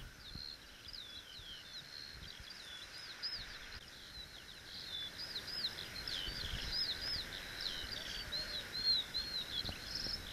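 A songbird singing a long, unbroken, rapid high warbling song over faint steady outdoor background noise.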